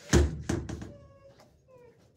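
Two loud knocks about a third of a second apart, then short, high whining calls from an animal, repeating about every half second.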